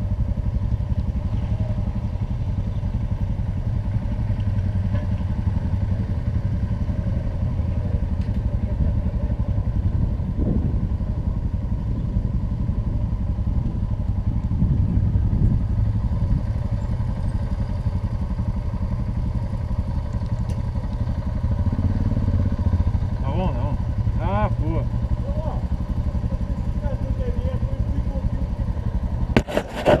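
Motorcycle engine running at low speed and idling, a steady low drone. Just before the end come rapid knocks and rubbing on the camera microphone.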